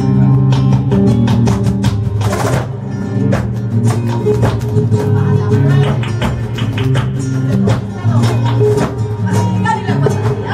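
Live flamenco music: guitar playing with many sharp percussive strikes in quick rhythm, one louder strike about two and a half seconds in.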